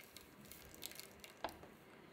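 Faint trickle of a thin stream of hot water poured into a glass dish of water, then stopping, with a light click about one and a half seconds in.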